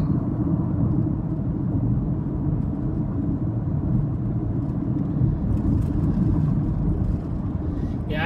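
Steady engine and road noise of a moving car heard from inside the cabin, a continuous low rumble.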